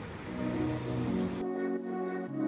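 Soft background music with long held notes fades in over a steady rushing noise. The noise cuts off suddenly about one and a half seconds in, leaving only the music.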